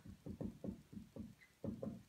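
Dry-erase marker writing on a whiteboard: a quick, uneven run of short taps and strokes as a word is written.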